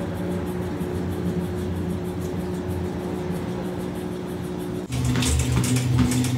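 Electric treadmill motor and belt running with a steady hum. Just before the end the hum changes abruptly to a lower, louder drone.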